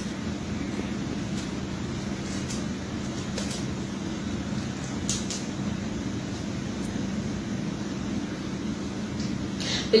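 Steady low room hum, with a few faint soft snaps as a rubber band is wound tightly, round after round, around a gathered bunch of cotton cloth.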